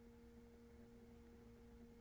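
Near silence: room tone with a faint steady hum at two pitches.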